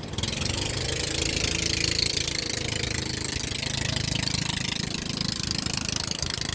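Boat engine running steadily with a low, throbbing rumble, over an even hiss.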